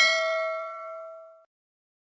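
A single bell ding sound effect from an animated subscribe-button and notification-bell overlay, struck once and ringing out, fading away about one and a half seconds in.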